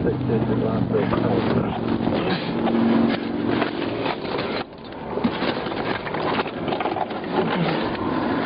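Indistinct, unintelligible voice sounds over a steady hum and noise, picked up by a police patrol car's dash-cam microphone; the sound drops briefly about halfway through.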